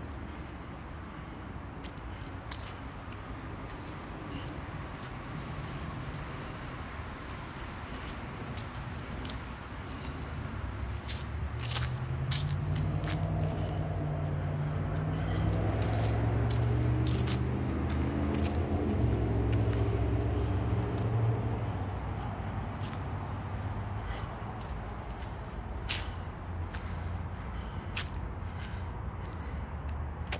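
Chorus of insects in summer woods, a steady high-pitched drone. Midway a low rumble swells and fades over about ten seconds, with a few sharp clicks.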